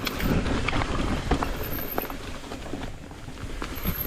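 Mountain bike rolling down a dirt singletrack: tyres on dirt and roots under a steady low rumble, with irregular clicks and knocks from the bike over the bumps.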